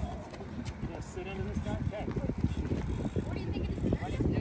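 Wind rumbling on the microphone, with faint voices talking in the background.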